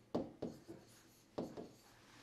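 Pen writing on an interactive whiteboard screen: about four short scratching strokes and taps, the first and last the loudest.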